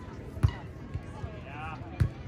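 A beach volleyball struck once by a player's arms or hands, a sharp slap about half a second in, with a couple of fainter knocks after it.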